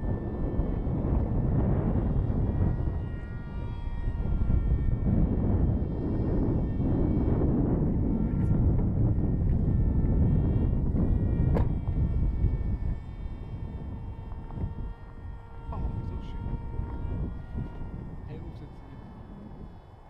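Wind buffeting the microphone with a loud rumble that eases after about twelve seconds. Under it is the faint, steady whine of a small electric-powered RC flying wing's motor and propeller flying overhead, with a couple of sharp clicks.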